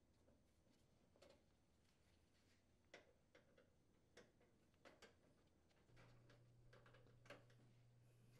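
Near silence broken by a few faint, scattered clicks of a screwdriver with a T15 Torx bit unthreading the small mounting screws of a microwave's door switch holder.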